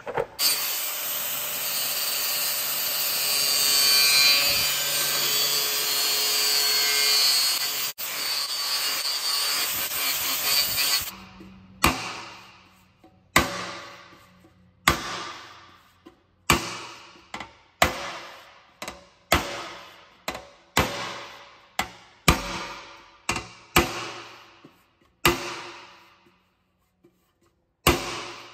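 Angle grinder with a cutoff wheel cutting into an aluminum water tank for about eleven seconds, opening up an old weld seam, then stopping suddenly. It is followed by about fifteen mallet blows on the tank, roughly one a second, each ringing briefly, as the cut flap of aluminum is hammered back down.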